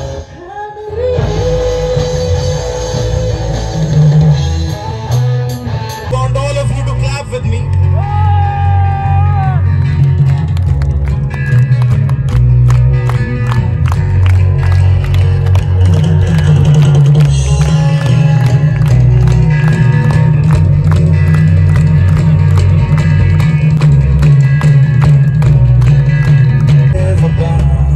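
A live rock band playing, with sung vocals and electric guitar. The singing holds long notes at first; about ten seconds in, a fast steady drum beat comes in and the music grows louder.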